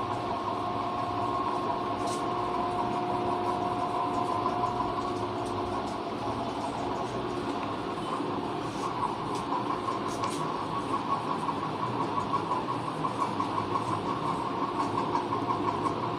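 A cloth wiping marker writing off a whiteboard in repeated strokes, heard as a quick, even pulsing in the second half, over a steady mechanical hum with a few held tones.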